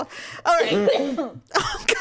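A woman coughing and clearing her throat in two bursts, the second shorter and sharper near the end.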